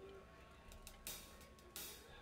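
Near-silent pause between songs on a band's stage, with a few short, soft hissy taps or scrapes, the loudest about a second in and just before the end.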